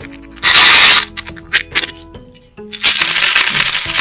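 Candy-coated chocolates pouring out of a plastic seashell case into a plastic toy bathtub in two loud rushes, one about half a second in and a longer one about three seconds in, over background lofi music.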